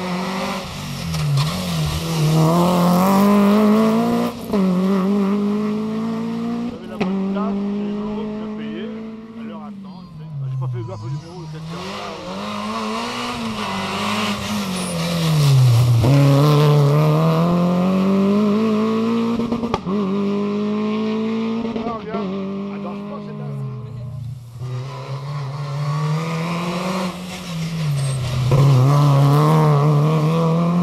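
Renault Clio rally cars' engines revving hard at full throttle, one car after another, the pitch climbing through each gear and dropping sharply at the shifts and lifts as they pass.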